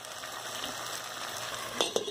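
Chicken pieces with chopped onion, tomato and bell pepper sizzling steadily as they fry in a pot. Near the end there is one short knock as the glass lid is set on the pot.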